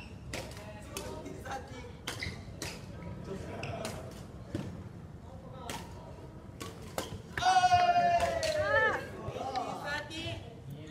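Badminton rackets striking a shuttlecock in a rally, sharp clicks at irregular spacing with footfalls on a wooden gym floor, echoing in the hall. The rally ends about seven seconds in, followed by a loud drawn-out cry from a player.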